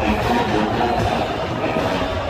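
Jackson State University's show-style marching band playing live in a stadium: brass and drums together.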